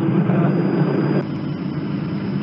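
Steady low engine drone of an aircraft heard through military radio audio, with a faint high whine that cuts off about a second in with two quick clicks, as a radio transmission ends.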